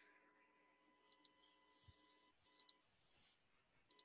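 Near silence broken by three faint computer mouse clicks, each a quick double tick, as points are picked to draw a line.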